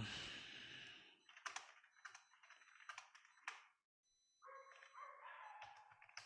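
Faint computer keyboard typing: a string of irregular key clicks.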